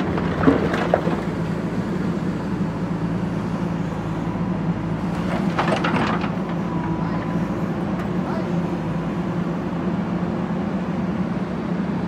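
JCB backhoe loader's diesel engine running steadily under load as the backhoe arm works. Brick rubble knocks against the bucket near the start and clatters about halfway through.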